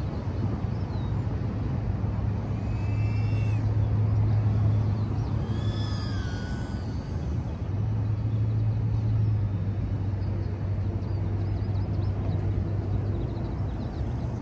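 Steady low outdoor rumble with a hum, broken between about three and seven seconds in by a few brief high-pitched whines that slide up and down.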